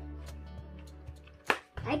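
Cardboard packaging box being handled and opened: faint taps and rubbing, with one sharp knock about one and a half seconds in. Background music with steady low tones runs underneath.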